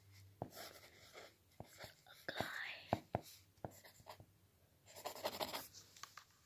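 Pencil writing on lined notebook paper: faint scratching strokes broken by sharp little taps of the point on the page, with a busier spell of scratching about five seconds in.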